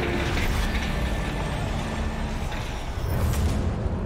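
Steady mechanical noise with a low hum. About three seconds in it turns into a louder, lower steady drone: the twin-turboprop Dornier in flight.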